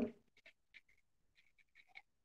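A pen writing on paper: faint, short scratching strokes, a few in the first half and a closer run near the end.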